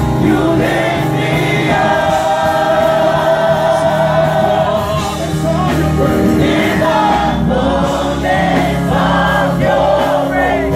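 Live gospel praise team, a lead singer with a group of backing singers, singing with a live band of drums and bass guitar. There is a long held note in the middle.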